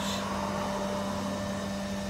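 A steady machine hum, one low tone with a fainter higher one, over an even background hiss.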